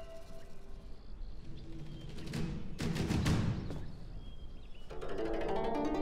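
Background music from the drama's score: low drum hits around the middle, then a run of plucked-string notes beginning near the end.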